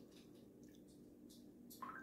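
Near silence: room tone with a faint low hum and a few faint ticks.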